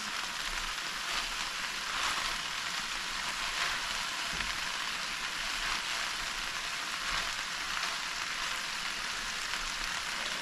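Chopped okra and salt fish frying in a little oil in an enameled cast-iron pan: a steady, even sizzle, with a spatula stirring through it now and then.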